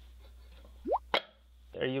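A single short plop that sweeps quickly upward in pitch, followed at once by a sharp click; a steady low hum stops at the click, and a man's voice begins near the end.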